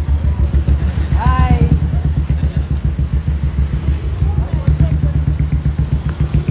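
Motor vehicle engine running close by, a steady low throb pulsing several times a second. A voice calls out briefly about a second in.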